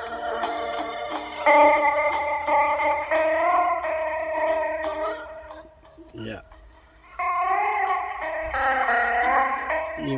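A song playing from a cassette through the Philips D6620 mono recorder's small built-in speaker, its pitch wavering; it drops away for about a second and a half past the middle. The owner puts the poor playback down to worn drive belts, and maybe an old motor.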